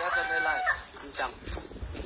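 A single drawn-out call with a falling end, lasting under a second, followed by faint low noise.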